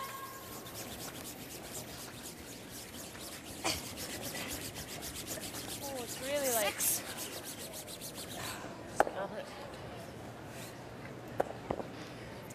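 Curling brooms sweeping hard on the ice ahead of a sliding stone, a fast, even scrubbing rhythm that thins out after about seven seconds. A player's shouted call comes about six seconds in, and a sharp knock about nine seconds in.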